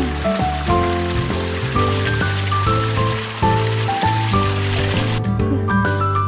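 Background music with a steady low bass and changing melody notes, over the rush of a small trickling stream that cuts off abruptly about five seconds in.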